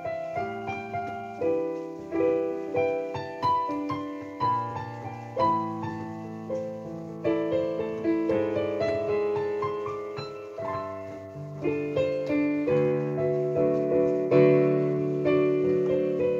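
Solo piano playing a slow, soft ballad with no singing: chords under a melody line of struck notes, each note fading after it is played.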